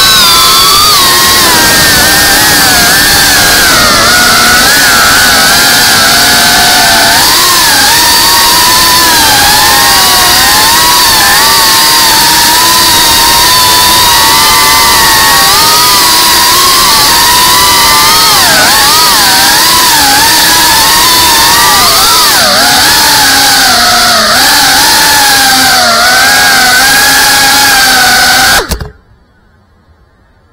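FPV racing quadcopter's brushless motors whining loudly, close to the onboard camera's microphone, the pitch rising and falling with the throttle. The motor sound cuts off suddenly near the end as the motors stop.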